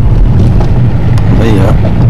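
Car driving along a road, heard from inside the cabin: a loud, steady low rumble of road and engine noise.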